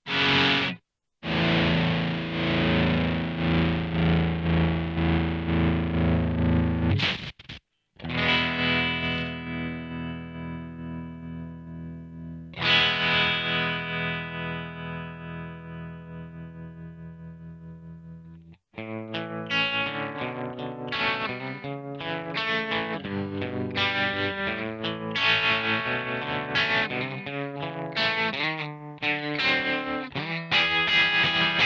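Electric guitar played through a MadeByMike Saltshaker tremolo pedal. Sustained chords are struck and left to ring while their volume pulses rapidly and evenly with the tremolo. Near the end it moves into a busier passage of picked chords, still pulsing.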